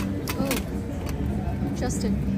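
Silver-plated metal pieces clinking as they are handled and set down in a silver serving bowl: a sharp clink at the start, then a few lighter clinks. Crowd chatter and a low street murmur run underneath.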